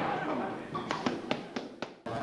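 Boxing gloves striking focus mitts: about five sharp slaps in quick succession through the second half.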